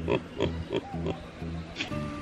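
Nigerian Dwarf buck in rut blubbering at a doe: a run of short, low grunts, about three a second. It is the courtship call a buck makes when he is interested in a doe he takes to be in heat.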